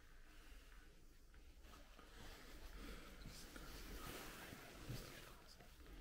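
Near silence: faint room tone in a small room, with one soft knock about five seconds in.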